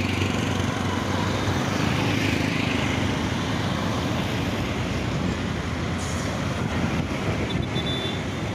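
Steady road traffic noise, with a vehicle engine running close by as a low hum.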